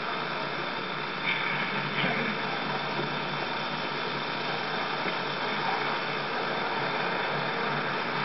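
Steady mechanical whirring hiss with a couple of faint clicks about a second and two seconds in.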